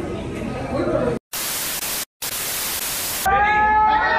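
Loud white-noise static in two bursts, cut off to total silence twice for a split second, after about a second of voices: an edited TV-static glitch transition. A sustained pitched tone comes in near the end.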